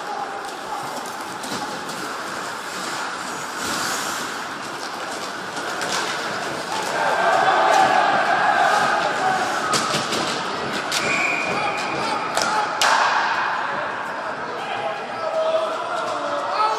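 Ice hockey being played in an ice hall: sticks and puck knocking and thudding against the boards, under the voices of the spectators, which grow louder about seven seconds in. A single sharp crack comes about three-quarters of the way through.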